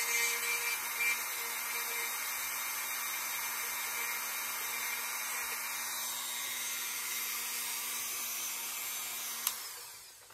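Dremel rotary tool running at high speed with a steady high whine, its bit drilling a small hole through a rivet on a resin statue's armor. Near the end there is a click and the whine dies away.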